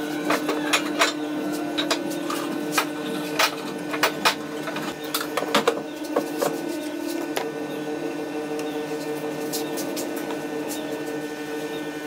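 Light clicks and taps of a steel rule and its protractor head being set and shifted against a wooden block as pencil marking lines are drawn, many in the first half and only a few later. Under them runs a steady mechanical hum.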